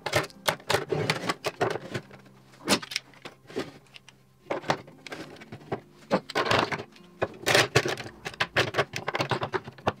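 Plastic lip gloss and lipstick tubes clicking and tapping against a clear acrylic drawer organizer as they are set into its slots, a quick irregular run of small clacks.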